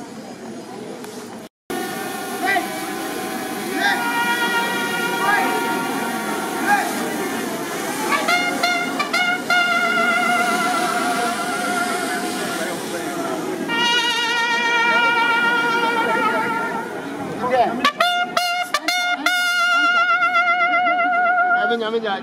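Trumpet playing a slow tune of long held notes, some with vibrato, over a murmur of voices.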